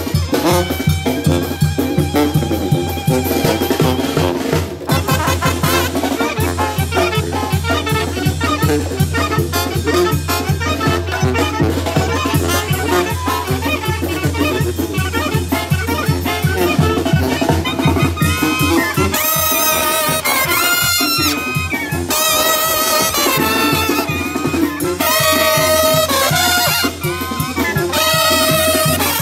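A brass band playing live: tuba, trombones, trumpets and clarinet over a steady beat of drum kit and congas, with a strong bass line. About two-thirds of the way in, long held brass chords come to the fore.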